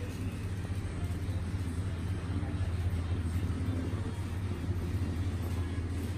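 A steady low hum or rumble under faint, even indoor background noise.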